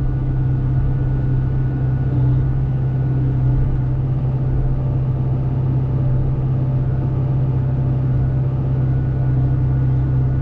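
Hyundai excavator's diesel engine running at a steady speed, heard from the operator's cab.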